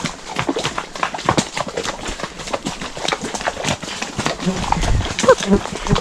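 Horses' hooves walking through puddles and mud on a flooded track, an irregular run of splashing steps.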